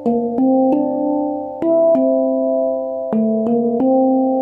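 Handpan tuned to a D minor (Kurd) scale, played with the fingers. Notes are struck in quick groups of three and left ringing so that they overlap.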